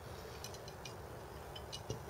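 Faint, sparse clicks and clinks of small metal hardware being handled: an M5 cap screw and an aluminium corner bracket against aluminium extrusion rails.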